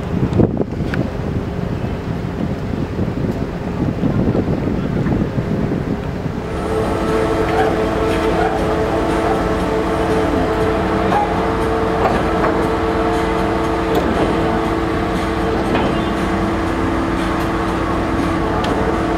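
Wind buffeting the microphone with a low rumble, then from about a third of the way in a steady mechanical hum with several held tones from a ship's running machinery at the pier.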